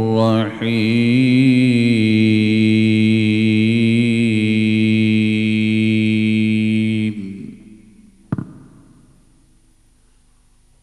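A man reciting the Quran in the melodic tajwid style: a short rising and falling phrase, then one long note held for about six seconds that fades out about seven seconds in. A single short knock follows about a second later.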